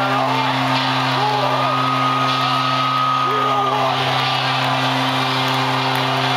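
Live rock band played through an arena PA and heard from the stands: a steady low droning chord with a voice rising and falling over it. A long high note is held for about two seconds starting near the two-second mark.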